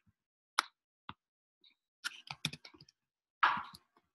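Scattered clicks and key taps on a computer as text is copied and pasted between windows: single clicks about half a second and a second in, a quick run of them around the middle, and a louder, slightly longer sound near the end.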